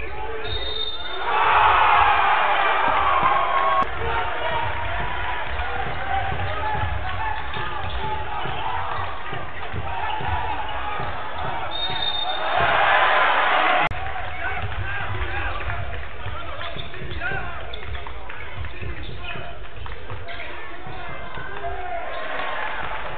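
Live arena sound of a basketball game: a ball bouncing on the hardwood court amid steady crowd noise. The crowd gets louder twice, about a second in and about twelve seconds in, each time cut off abruptly.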